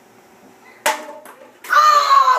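A sharp knock with a short ringing tone just under a second in, then a loud, high-pitched yell near the end.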